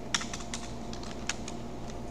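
Computer keyboard being typed on: a run of short, irregular key clicks as Enter is pressed a few times and a ping command is typed.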